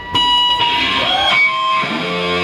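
Electric guitars played loud through Marshall amps, coming in suddenly just after the start with held, ringing notes.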